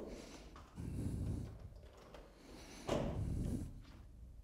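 A door being opened by its lever handle, with two short stretches of handle and latch noise, about a second in and again near three seconds.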